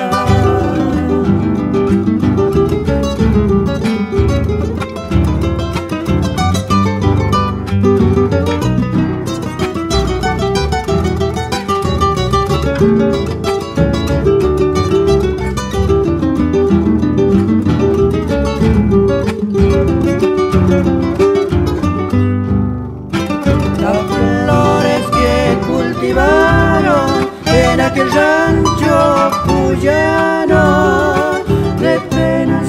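Instrumental interlude of a Cuyo tonada played by acoustic guitars over a guitarrón bass: a plucked melody runs over chordal accompaniment, with a brief break about two-thirds of the way through.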